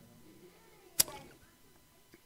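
A single short, sharp click about a second in, against quiet room tone in a pause between spoken sentences.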